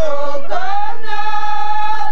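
Women singing a folk tune together in high voices, with a bowed violin; the melody dips, then rises into one long held note.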